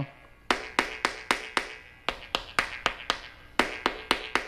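Wooden stick tapping on patio floor tiles in runs of about five taps, about four a second, each tap with a short ringing tone. It sounds hollow: the tiles' thin-set bed did not bond to the concrete slab beneath.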